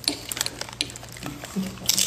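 Sharp, crisp crackling clicks of a potato chip topped with fish roe being handled, then a louder crunch near the end as it is bitten.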